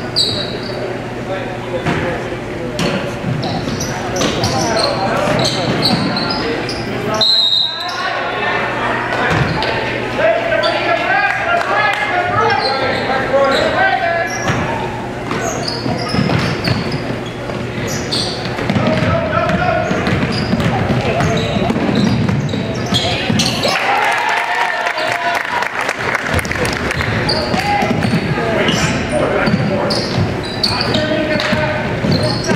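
Basketball game sounds echoing in a gymnasium: a basketball bouncing on the hardwood floor, short high sneaker squeaks, and indistinct calls from players and onlookers.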